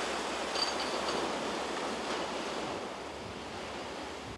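Small waves breaking and washing up on a sandy beach, a steady surf that eases slightly toward the end.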